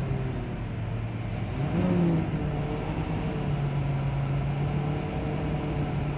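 Semi truck's diesel engine heard from inside the cab as the truck pulls slowly onto a truck scale: a steady drone that rises briefly about two seconds in, then settles back to an even pitch.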